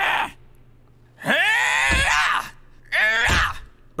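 An animated character's voice giving two loud, strained wordless cries. The first comes about a second in, rises and then falls in pitch, and lasts over a second; the second is shorter and comes near three seconds in.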